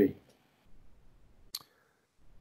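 The end of a spoken word, then a quiet pause broken by a single short click about one and a half seconds in.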